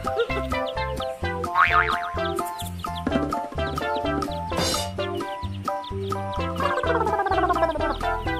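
Children's background music with a repeating bass line and cartoon sound effects: a quick rising glide about a second and a half in and a long falling glide near the end.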